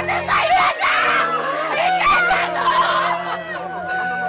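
Several mourners wailing and crying in grief, overlapping voices sliding up and down in pitch, with no clear words.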